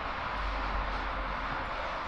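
Steady low rumble with an even hiss of background noise, with no distinct clicks, tones or events.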